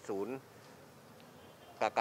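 A man's voice speaks one word, then a pause of about a second and a half holding only faint room noise, and speech starts again near the end.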